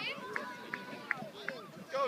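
Faint shouting and chatter of children and adults at a distance, with a few short high chirps at an even pace in the middle.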